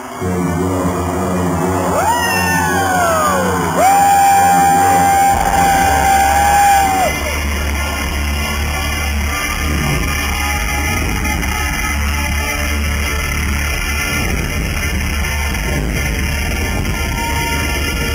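Live pop concert music over a large arena PA, recorded from within the crowd, with audience yelling. About two seconds in a high sliding sound falls twice, then one long high note is held for about three seconds. After that a steady bass-heavy groove runs on.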